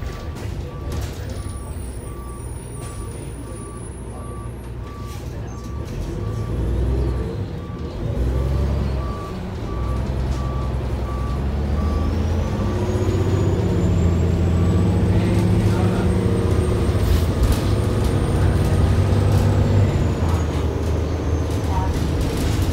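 The Cummins ISM diesel engine of a 2000 Neoplan AN440A transit bus, heard from inside the cabin, pulling away and accelerating from about a third of the way in, with a high whine that rises as the bus gains speed. Through the first half a steady, evenly repeating beep sounds.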